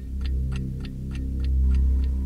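Clock ticking in a quick, even rhythm of about three ticks a second, over a loud steady low drone.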